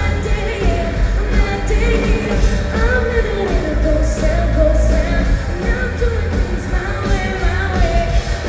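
Live band playing a dark-country pop-rock song: sung vocals over electric guitars, heavy bass and drums, recorded loud from the audience.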